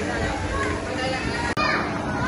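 Many children playing and talking at once, with adults' chatter, as a steady busy din of overlapping voices. The sound drops out for an instant about one and a half seconds in, then the din carries on.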